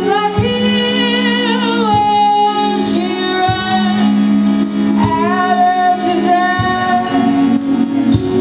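Live indie rock song: a woman sings long held notes with vibrato over a steady low drone, with a regular tick about twice a second.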